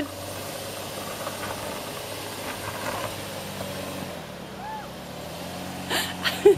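A steady, low engine hum, changing pitch slightly about four seconds in, with faint voices in the background.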